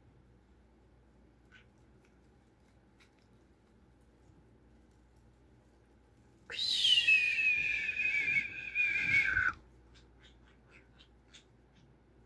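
A conure's drawn-out whistling call of about three seconds, starting about halfway through with a short fall in pitch and then held nearly steady. Before it, only faint scattered clicks.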